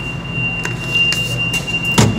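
Subway station ambience: one steady high-pitched squeal over a low rumble. A few short clicks and clacks come as a MetroCard is swiped and the turnstile is pushed through.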